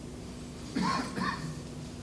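Quiet room tone with a steady low hum during a pause in speech, broken by one brief faint sound just under a second in.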